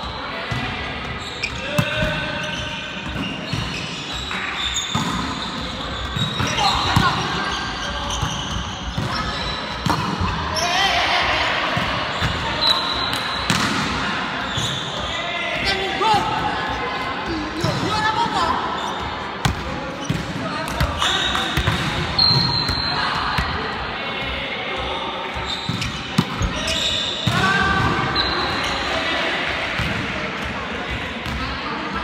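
Indoor volleyball game: players' voices calling out over repeated hits of the volleyball and its bounces on the wooden gym floor, echoing in the large hall.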